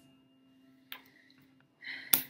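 Quiet room tone with a faint steady hum, one short click a little before halfway, and a breath drawn near the end.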